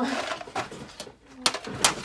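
A metal tin of Prismacolor colored pencils being handled and opened: a rustle, then sharp metallic clicks of the hinged lid, one about halfway through and two close together near the end.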